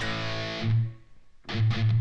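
Distorted electric guitar playing an A power chord riff: a ringing chord that is cut short just under a second in, then two short low palm-muted hits near the end.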